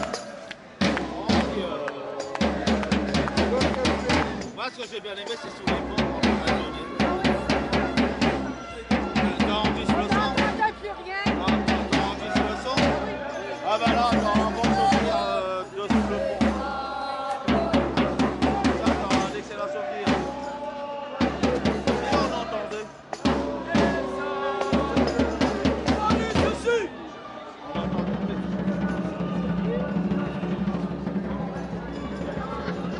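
Parade drum beaten with sticks in fast, rhythmic runs with brief pauses, among crowd voices; the drumming drops away near the end.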